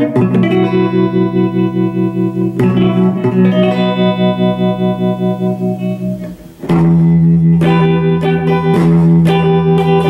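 Electric guitar played through a PRS MT15 Tremonti valve amplifier set to 7.5 watts, into Celestion 12-inch speaker cabinets: sustained chords ring out, changing a few seconds in, then drop away briefly about two-thirds through before a new chord is struck and held.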